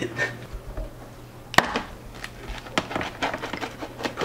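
Rolling pizza cutter working through a crisp baked pizza crust on a wooden cutting board: a run of dry clicks and crunches, the sharpest about one and a half seconds in, over a low steady hum.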